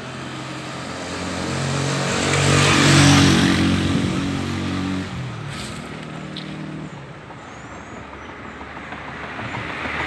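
A motor vehicle passing close by on the street, its engine and tyre noise building to a peak about three seconds in and then fading; another vehicle approaches near the end.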